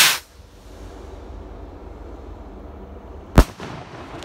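Radioactive consumer firework rocket: the end of its launch whoosh fades in the first moment, then a single sharp bang as it bursts high overhead about three and a half seconds in, with a short echo trailing it.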